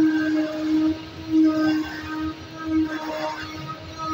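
Flatbed digital cardboard cutting plotter at work: its tool head gives a steady electric hum that holds for about the first second, then stops and starts in shorter stretches as the head moves from cut to cut.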